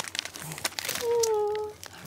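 Clear plastic flower wrapping crinkling as it is handled, crackling through the first second and again near the end, with a short held vocal sound in between.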